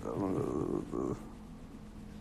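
A man's voice, a low drawn-out vocal sound, for about the first second; it then stops, leaving only a faint steady hum.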